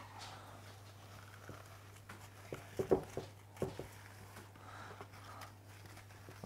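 Hands breaking and crumbling digestive biscuits and soft cake into a glass dish: faint crumbly rustling with a few sharper snaps between about two and a half and four seconds in.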